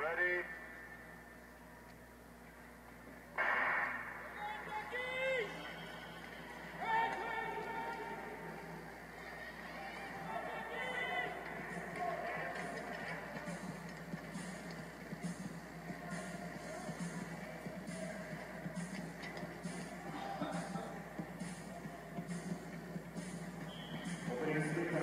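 Sound of a televised speed-skating race heard through a TV speaker: indistinct voices over arena background sound, with a sharp loud burst about three seconds in.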